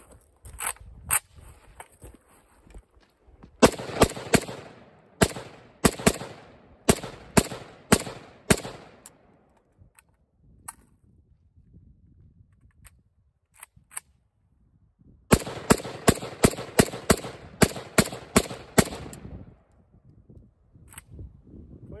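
WBP Jack 7.62×39 AK-pattern rifle fired semi-automatically: two single shots, then two strings of rapid fire, roughly two to three shots a second, each lasting about five seconds, a few seconds apart.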